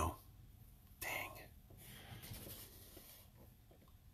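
A man's soft breath, short and breathy, about a second in, followed by faint breathing noise in an otherwise quiet pause.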